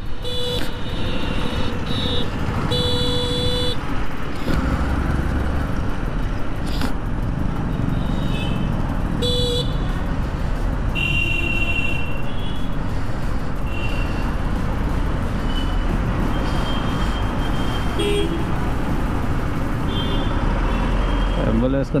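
Vehicle horns honking in short toots, many times over, above the steady noise of a motorcycle riding through road traffic.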